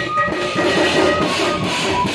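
Electronic percussion pad (octapad) played fast with drumsticks through an amplifier: a rapid run of drum hits, with a few short high notes over them.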